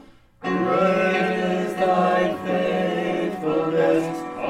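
Small group of voices singing a hymn with piano accompaniment; the singing comes in about half a second in, after the piano introduction fades.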